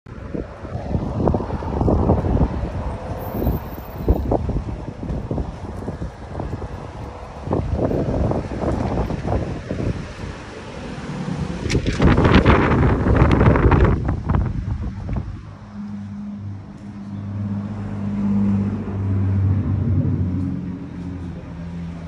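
Wind buffeting a phone's microphone, with road traffic passing. A louder swell of noise comes about twelve seconds in, and a steady low hum takes over for the last few seconds.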